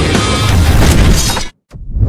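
Loud, dense intro music that cuts off abruptly about one and a half seconds in; after a brief silence a new sound swells up near the end.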